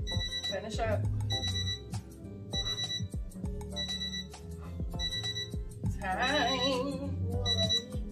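Workout interval timer alarm beeping about seven times, one short high beep roughly every second, marking the end of a 40-second work interval. Background music with a steady beat plays under it.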